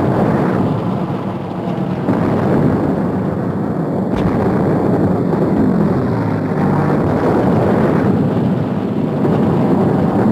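Battle sound of propeller warplane engines droning, mixed with explosions and anti-aircraft gunfire. There is a sharp crack about four seconds in, and an engine note falls in pitch a little later as an aircraft passes.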